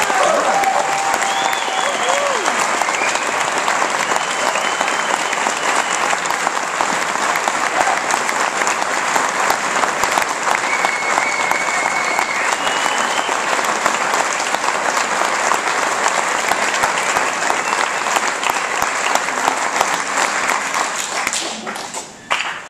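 An audience applauding steadily, with a few shouted cheers rising above it in the first half. The applause begins to die away near the end.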